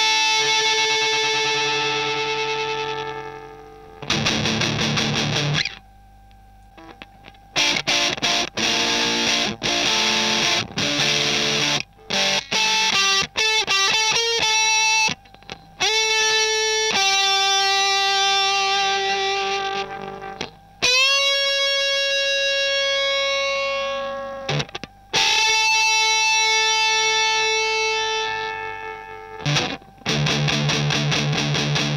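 Electric guitar played through a germanium-transistor fuzz pedal, a Madbean Bumblebee built on the Baldwin-Burns Buzzaround circuit, giving a thick, distorted tone. It plays long sustained notes that ring and fade, runs of quickly picked notes, and notes bent up into long held tones. The circuit is being tested first with a Tone Bender-style transistor set and then with all high-gain germanium transistors.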